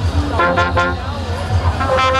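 Brass ensemble of trumpets, trombone and tuba playing a passage of short, separated notes with some bending pitches, a new chord entering near the end.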